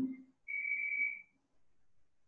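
A single high whistle, held steady for under a second and trailing off at the end.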